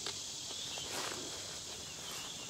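Steady high chirring of insects, with a couple of soft footsteps on grass.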